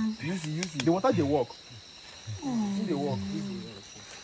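A person's voice making wordless, wavering cries, two long ones with a short pause between.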